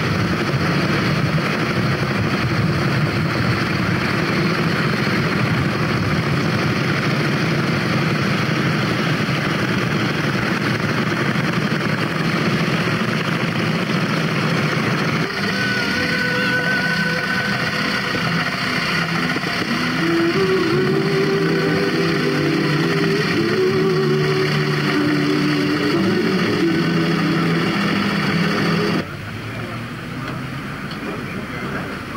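Vintage motorcycle engines running. After a cut about halfway through, a vehicle engine pulls along a road, its note rising and then holding steady. The sound drops off suddenly near the end.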